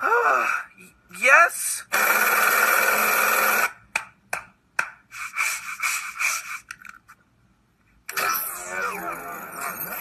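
Cartoon sound effects played through a TV: a sigh, then a loud steady electronic buzz of about two seconds from a sci-fi levelling gadget, a run of clicks, and a sweeping electronic hum as the device projects its grid.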